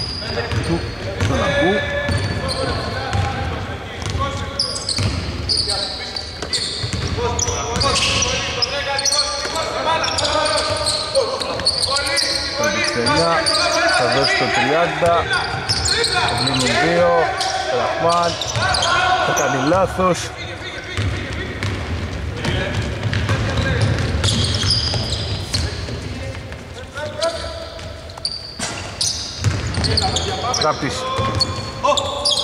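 Live basketball play on a hardwood court in a large, mostly empty hall: a ball bouncing and repeated short impacts, players' voices calling out, and a run of short squeaks from the middle of the stretch, typical of sneakers on the court.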